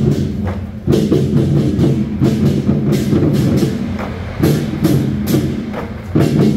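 Loud music with a heavy beat and sharp drum strokes, from a centipede-drum troupe striking drums mounted on a line of wheeled carts along with the backing music.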